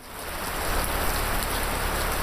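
A steady, even hiss like falling rain, fading in at the start and then holding level.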